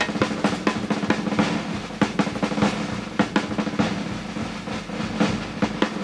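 Jazz big-band drum kit played solo: fast snare-drum rolls and fills with bass-drum strokes, many sharp hits a second.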